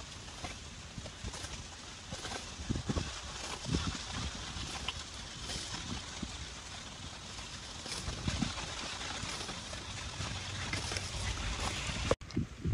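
Water spinach stems being cut with a sickle and the leafy shoots handled: irregular short snaps and rustles over a low steady rumble.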